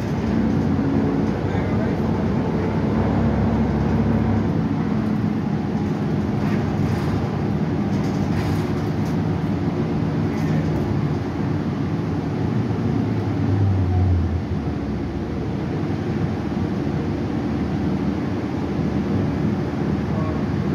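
Cabin sound of a 2015 Gillig 29-foot hybrid bus under way: its Cummins ISB6.7 diesel and Allison H 40 EP hybrid drive running steadily over road noise. A low hum swells about 13 seconds in and drops away a second later.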